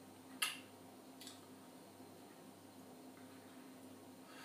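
A sharp click about half a second in and a fainter one just under a second later, over a steady low hum of room tone.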